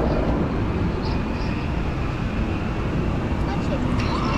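Steady low rumble and hiss of outdoor noise, with no distinct events.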